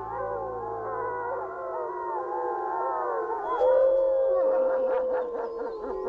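A pack of gray wolves howling in chorus, many overlapping voices gliding up and down. About three and a half seconds in, one long howl rises above the others and slowly falls in pitch. It is the pack's dawn rallying howl, a call to arms before the hunt.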